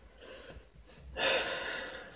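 A person breathing close to the microphone: a quick breath in a little before a second in, then a long breathy exhale.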